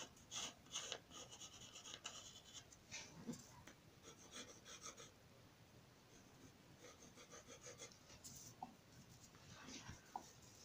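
Faint scratching of a pencil on paper in short sketching strokes, quick and close together at first, fading around the middle and coming back later.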